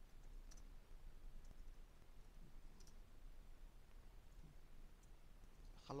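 A few faint, widely spaced computer keyboard clicks as a short word is typed, over near-silent room tone.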